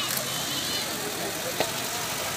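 Steady background noise of an open-air gathering with faint distant voices, and a single short click about a second and a half in.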